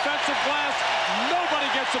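A male TV commentator talking over a steady roar of arena crowd noise.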